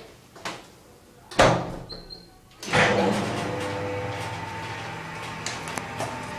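Aesy-liften platform lift: its door shuts with a loud bang, a short faint beep follows, then about a second later the lift's drive starts with a sudden onset and runs with a steady hum as the platform moves.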